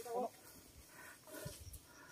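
A dog barking faintly in short yelping barks, once at the start and again about a second and a half in.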